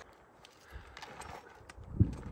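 Faint, scattered soft thuds and light ticks: a flat stone skipping across a lake, with footsteps on grass after the throw.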